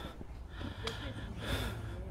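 Faint, indistinct voices and a person's breathing over a steady low rumble, with a short click about a second in.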